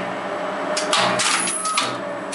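Electromechanical relays in an old Express Lifts lift controller cabinet clacking as they switch while the lift runs, with a burst of clatter about a second in over a steady low hum.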